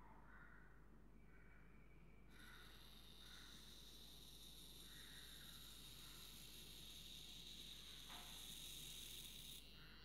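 Near silence: faint room tone, with a faint steady high-pitched whine from about two seconds in.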